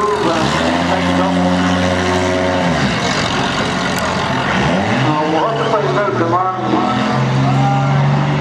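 Banger racing car engine revved hard and held at high revs while the car spins its wheels in a cloud of tyre smoke; the revs drop about three seconds in, then climb and hold again.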